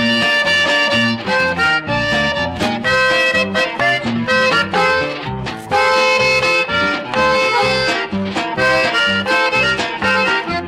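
Instrumental conjunto music: a button accordion plays a quick melodic run of short notes over guitar and bass keeping a steady two-beat ranchera rhythm. No singing.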